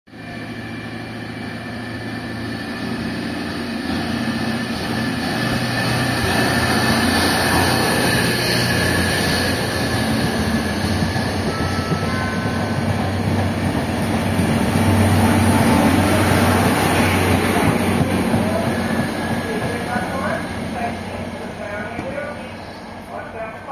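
SKPL passenger train pulling out of the station, its engine running with a steady low hum as the carriages roll past, growing louder through the middle and fading near the end as it moves away.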